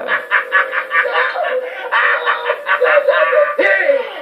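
A high-pitched puppet character's voice from the movie playing on the TV, vocalising without clear words.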